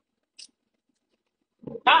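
Near silence with one faint short tick about half a second in, then a woman's loud voice cutting in near the end.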